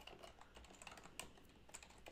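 Faint typing on a computer keyboard: a run of light, unevenly spaced keystrokes.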